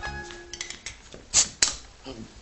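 Background music ending, then light clicks and two sharp taps about a second and a half in, from hand tools worked against a wooden box on a workbench.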